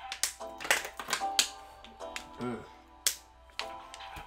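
A pop song plays, with sustained chords and several sharp snap-like percussive clicks, most of them in the first second and a half and one more about three seconds in.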